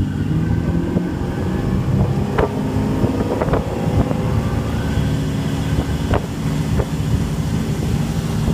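The 300 hp MerCruiser 350 MAG V8 sterndrive of a 2008 Sea Ray 240 Sundeck running steadily with the boat under way, with wind on the microphone. A few short, sharp knocks come through, about two, three and a half and six seconds in.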